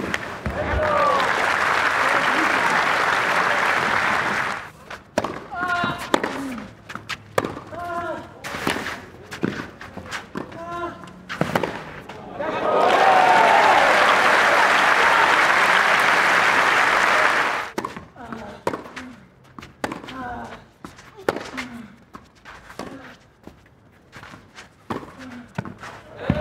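Tennis rallies on clay: racket strikes of the ball, several paired with a player's grunt. Two stretches of crowd cheering and applause stand out as the loudest parts: one just after the start lasting about four seconds, and another from about halfway lasting about five seconds.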